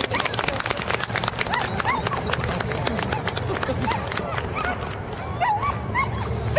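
A border collie yipping and barking in short, excited bursts, with people's voices in the background.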